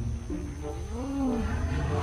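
A creature roar sound effect for an animated Stegosaurus hit by a laser beam, rising and then falling in pitch, over background music.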